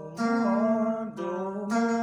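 Electric guitar playing single picked notes of a blues scale going down, each note ringing on, with one note bent slightly up and back.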